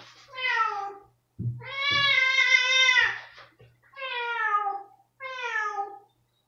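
Domestic cat meowing four times in protest at a spot-on flea treatment being applied: three short calls that fall in pitch and, in the middle, one long drawn-out meow. A few soft knocks of handling sound under the long call.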